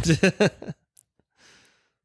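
A short burst of laughter from one person, followed by a faint breath out about a second later.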